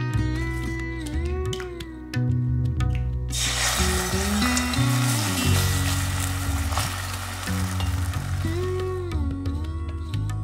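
Beaten egg sizzling as it is poured into a hot frying pan. The sizzle starts suddenly about a third of the way in and fades near the end, under background music.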